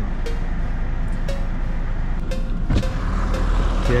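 Road traffic heard from inside a car cabin: a steady low engine rumble that grows louder over the second half as a large tanker truck moves alongside.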